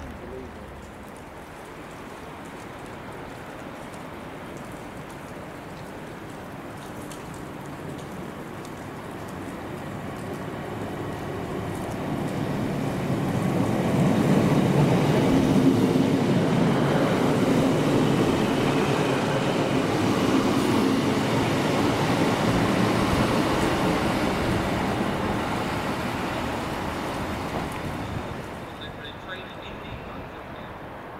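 Class 156 diesel multiple unit passing close along the platform, its underfloor diesel engines and wheels on the rails growing louder, peaking around the middle and fading away near the end, with rain falling.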